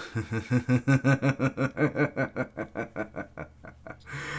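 A man laughing: a long run of quick, even chuckles, about six a second, trailing off near the end.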